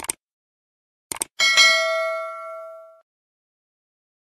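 Sound effect of mouse clicks followed by a bell ding: one click at the start, a quick double click about a second in, then a bright bell chime that rings and fades out over about a second and a half.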